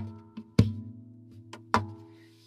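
D'off JC jumbo cutaway acoustic guitar played percussively: sharp hits on the lacquered top at the start, about half a second in and near the end, with a lighter tap between the first two. After each hit the strings ring on as a sustained chord.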